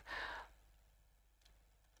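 A short, soft breath in the first half second, then dead silence.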